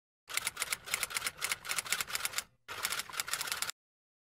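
Typewriter keys clacking in quick succession as a typing sound effect, in two runs with a short break about two and a half seconds in.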